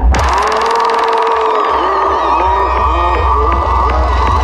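Dark psytrance electronic music: a deep bass comes in right at the start and holds under a steady high synth tone, with short bending synth blips repeating above it.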